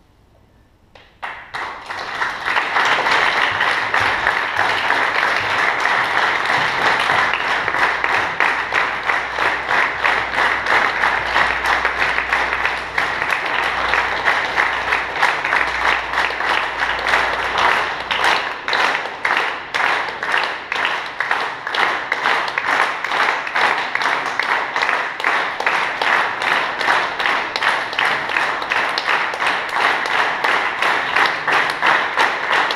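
Audience applause that breaks out suddenly about a second in and goes on loud and dense; in the second half it grows more regular, like clapping in unison.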